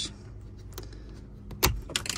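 White plastic retaining clip on a Tesla Model Y center console side panel being pressed and popped off by hand: a faint click, then a sharp click and knock about a second and a half in, and another click near the end.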